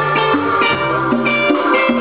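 A live Latin band playing, with hand-played conga drums and a bass line under held melodic notes.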